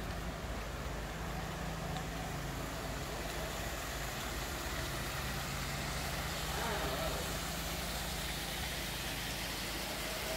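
A steady low mechanical hum over a constant noisy background, with faint voices audible around the middle.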